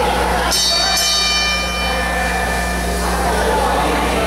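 Wrestling ring bell rung about half a second in to start the match: a metallic ring with several high overtones that fades over about two and a half seconds.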